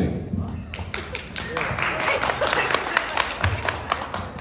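Applause: a burst of laughter, then many hands clapping, starting about a second in, thickening into steady clapping and thinning out near the end.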